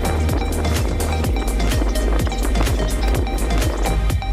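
Background electronic music with a steady beat and a repeated low kick drum.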